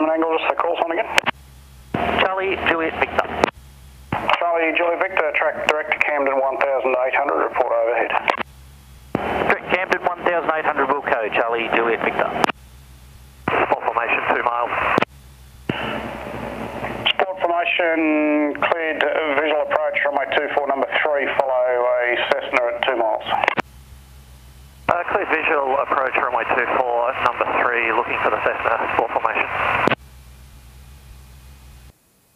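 Voices over a light aircraft's VHF air-band radio and intercom: narrow, tinny transmissions that cut in and out in bursts with short gaps between them, and a brief hiss of open-channel noise about two-thirds of the way through. Under it runs a faint steady low hum of the engine.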